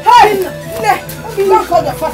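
A woman wailing and crying in distress, her voice rising and falling in long cries, over a steady background music score.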